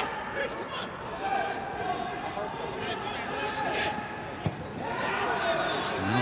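Pitch-side sound of a football match in an empty stadium: players' distant shouts and calls, and one sharp kick of the ball about four and a half seconds in.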